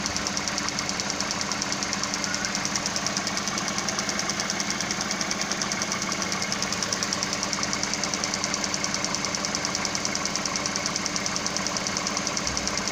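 A 2003 Hyundai Accent's 1.6-litre DOHC four-cylinder engine idling steadily with an even, rapid pulse. A mechanical gauge shows its manifold vacuum is normal, about 17 inches, so the engine is mechanically sound despite the low MAP sensor reading.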